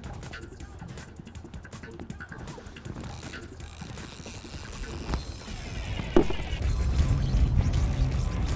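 A fishing reel clicking as a hooked musky is reeled in, over a low rumble of wind and rough water that grows louder past the middle.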